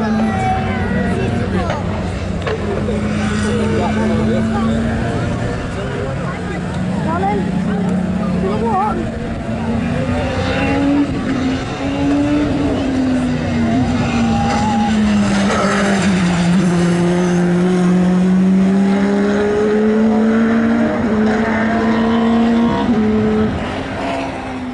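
Engines of two circuit racing cars, a 1996 Renault Laguna BTCC touring car and a BMW E30 Group H hillclimb car, running at racing pace. Their engine notes fall under braking and rise again on the throttle through the corners, dipping lowest past the middle before climbing again.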